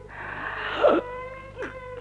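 A person crying: breathy sobbing with a sharp catch just before a second in, then a held, steady wailing note.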